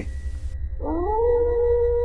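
A long wolf howl that glides up in pitch about a second in and then holds one steady note, over a low background drone.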